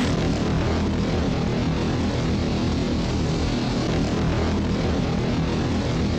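The Hypnotoad's hypnotic drone: a loud, steady electronic droning hum that starts abruptly and holds without change.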